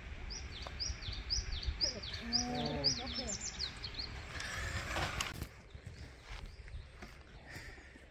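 A bird calling a quick series of high, falling chirps, about two or three a second, that stop about three and a half seconds in. A person's voice is briefly heard under the chirps.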